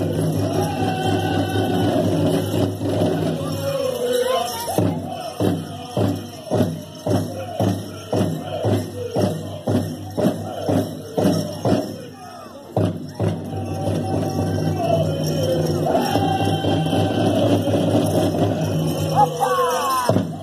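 A powwow drum group sings a fancy dance contest song, with high vocables over the steady beat of a big drum. From about five seconds in, the drum changes to loud, evenly spaced hard strikes, about two a second, for some seven seconds. After a brief lull the full singing and steady drumming come back in.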